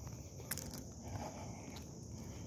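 Faint outdoor ambience: a steady high-pitched insect chorus of crickets with quiet footsteps on a paved road and a light click about half a second in.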